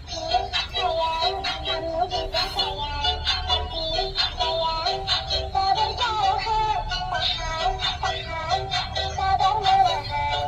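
Dancing cactus toy playing an electronic song with a synthetic-sounding vocal melody and a steady beat through its small built-in speaker; the music starts suddenly.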